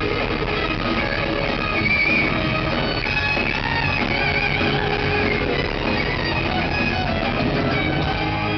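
Live metal band playing an instrumental passage: electric guitars, bass and drums, with a high, wavering lead guitar melody on top, heard from the crowd.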